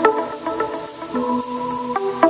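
Electronic dance music in a breakdown: sustained synth chords and short plucked synth notes with no kick drum, under a noise sweep that rises steadily in pitch as it builds toward a drop.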